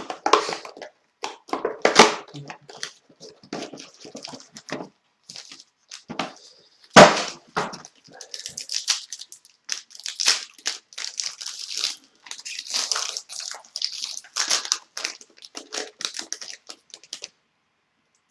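A trading card pack being opened and its cards handled: the wrapper crinkling and tearing, then the cards rustling and sliding against each other in a long run of dry crackles. A sharp crack about seven seconds in is the loudest sound.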